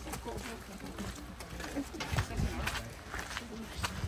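Indistinct voices talking in the background, with a few sharp knocks scattered through, the loudest about two seconds in.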